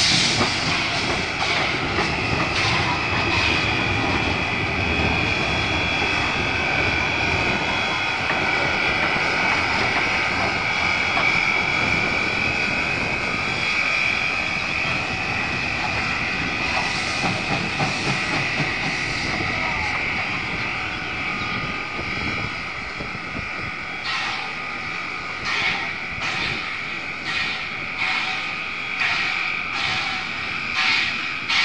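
Steam tank locomotive working under steam, with a steady high hiss. Its exhaust beats come through as distinct, irregular chuffs at the start and again over the last several seconds.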